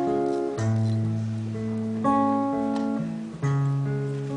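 Guitar opening of a song: chords strummed and left to ring, with a new chord about every second and a half.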